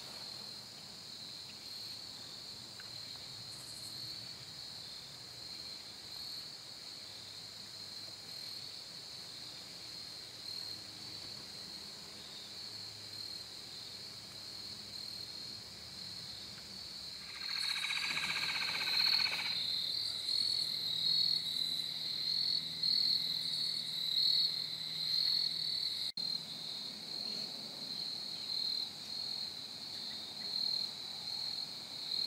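Evening chorus of crickets: a steady, finely pulsing high trill that grows louder about two-thirds of the way in. A brief separate call of about two seconds stands out at that point.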